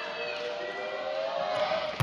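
Indoor volleyball arena crowd ambience with music in the background: sustained, slowly gliding tones over a steady crowd hum, quieter than the commentary around it.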